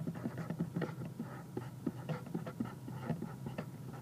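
Felt-tip wet-erase marker writing on a white surface: an irregular run of short, scratchy pen strokes, several a second, over a low steady hum.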